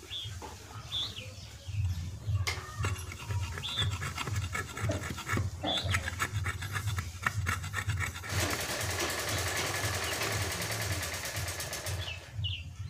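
A broad steel blade cutting and shaving the point of a wooden spinning top against a wooden plank: sharp chops at first, then a steady rasping scrape of about four seconds from about eight seconds in. A bird chirps now and then, over a low throbbing in the background.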